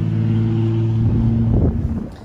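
Steady low hum of an engine running, with a brief rustle near the end.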